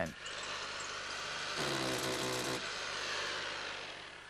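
A power tool running with a steady rushing hiss. A humming motor tone comes up for about a second in the middle, and the sound fades near the end.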